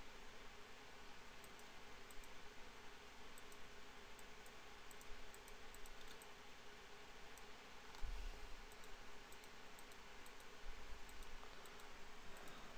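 Faint, scattered clicks of a computer mouse over a steady background hiss.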